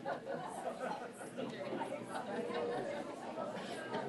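Many people chatting at once in a large hall, a steady jumble of overlapping voices with no single speaker standing out.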